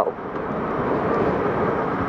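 Steady rush of wind and riding noise from a 2006 Yamaha FZ6 Fazer motorcycle under way on the road, heard at an even level throughout.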